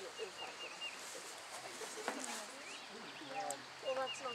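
Songbirds chirping as the eclipse darkens the sky, singing as they would at dusk: a quick run of about five short, high, repeated notes, then a few fast falling notes. Murmured voices of onlookers can be heard faintly under them.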